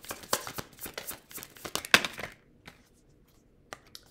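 A deck of tarot cards shuffled by hand: a quick run of soft card clicks and rustles, with one sharper snap about two seconds in, stopping shortly after.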